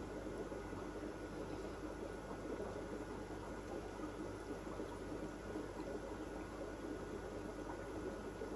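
Steady bubbling and hiss of aquarium filtration and aeration in a fish room, with a faint low hum underneath.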